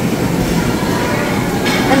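Steady background noise of a busy buffet hall, a continuous hum and hiss with a brief burst near the end.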